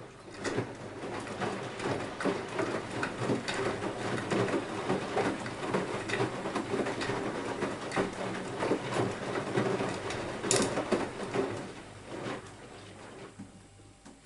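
Beko WMY 71483 LMB2 washing machine drum tumbling a load of dark laundry in water: sloshing and splashing with many small clicks, over a low motor hum. After about twelve seconds the drum stops and the sound fades.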